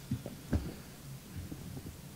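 Steady low electrical hum through a lectern microphone, with a few soft low thumps, the loudest about half a second in.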